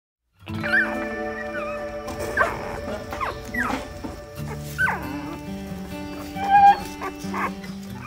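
About half a dozen short, high-pitched dog whines and yelps over light background music with held notes. The loudest cry comes near the end.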